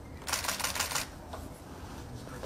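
Several camera shutters firing in quick succession, a rapid clatter of clicks lasting just under a second, starting a quarter second in.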